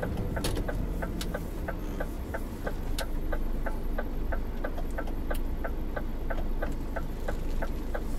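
Truck's turn-signal indicator ticking steadily, about four ticks a second, over the low running of the truck's engine heard from inside the cab, with a few louder single clicks now and then.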